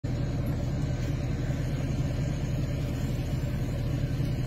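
Engine of a large vehicle idling close by, a steady low rumble.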